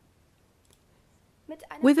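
Near silence with one faint single click about two-thirds of a second in, a computer mouse being clicked to advance a slide. A woman's speaking voice starts near the end.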